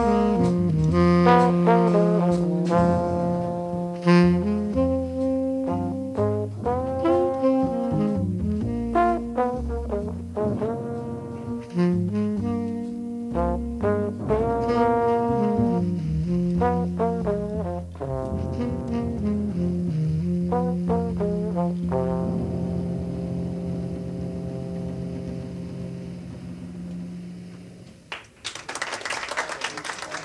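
A live jazz quintet of tenor saxophone, trombone, piano, double bass and drums plays the closing horn lines of a tune. The horns end on a long held note that fades out near the end, and audience applause breaks out.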